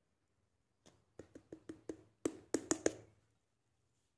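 A hollowed papaya shell, held upside down, being knocked to shake out the egg steamed inside it: about ten quick knocks between one and three seconds in, growing louder.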